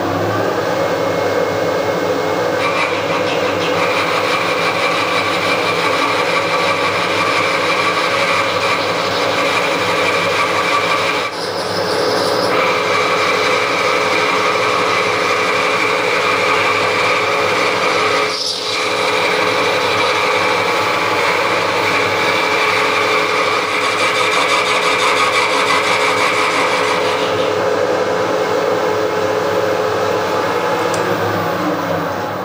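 Milling machine running a boring head, its boring bar cutting the cast-iron end boss of a milling vise to open the screw hole for a bush. A steady machine hum with a higher whine that comes in about two and a half seconds in and drops out near the end, broken briefly twice.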